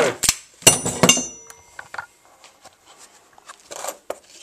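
Small freshly ground steel tabs clinking as they are put down on a workbench: several sharp metallic clinks with a short ring in the first second or so, then fainter taps.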